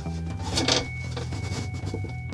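Paraffin-soaked plywood partition scraping against a wooden nucleus hive body as it is worked loose and pulled out, with a short rasping scrape about half a second in and lighter rubs after. Background music with steady tones plays underneath.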